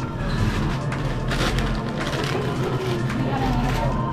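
Grocery store ambience: a steady low hum under a haze of background noise, with faint voices and music in the background.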